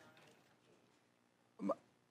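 Near silence, then a single short vocal sound, a brief voiced catch or syllable, shortly before the end.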